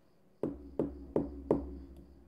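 Four knocks tapped out in a quick, even rhythm, the last a little sooner than the others, each with a short ring: a secret-knock pattern being recorded by an Arduino knock lock. A low hum sets in with the first knock.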